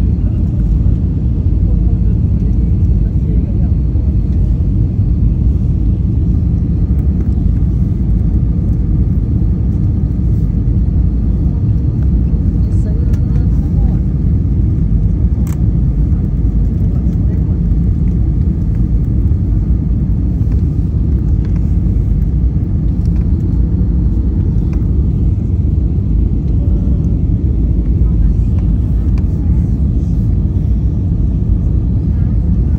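Airliner cabin noise from a window seat during the descent to land: a steady, loud, low rumble of the jet engines and the airflow over the fuselage.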